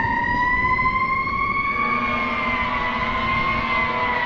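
Fire truck siren wailing, its pitch rising slowly for about two seconds and then falling.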